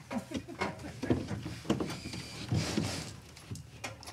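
Irregular light knocks and clatter of a wooden fascia board being handled and set into place against the roof framing.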